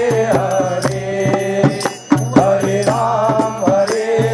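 Group devotional kirtan: voices singing a chant over a steady harmonium drone, with regular percussion strikes keeping the beat. The music dips briefly about halfway through.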